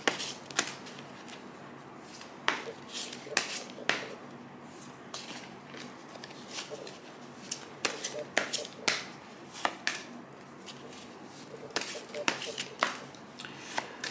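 A deck of tarot cards being shuffled by hand: irregular sharp snaps and flicks of the cards, about a dozen, with soft rustling between.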